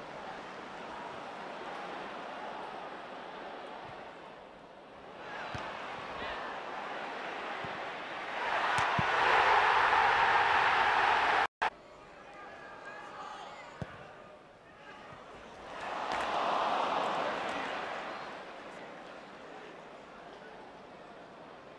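Football stadium crowd noise that swells and fades. A big roar of cheering rises about eight seconds in and cuts off suddenly a few seconds later. The crowd swells again briefly near the end.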